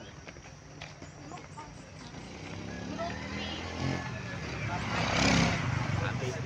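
A motor vehicle's engine approaching and passing close by, growing louder through the second half and loudest about five seconds in.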